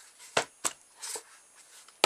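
A hollow cardboard box chassis, freshly hot-glued, being handled and knocked against a desk: two quick sharp knocks close together, then a softer handling sound about a second in.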